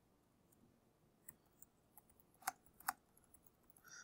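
Faint computer keyboard keystrokes while a line of text is typed: a few scattered light clicks, the two loudest about two and a half and three seconds in.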